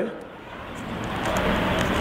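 Steady rushing background noise, with no speech, that grows louder over about a second.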